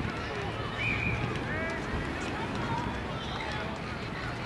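Several distant shouted calls from footballers and onlookers across an open football ground, over a steady low background noise.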